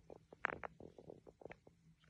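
A cat lapping water from inside a drinking glass: faint, irregular wet clicks, several a second.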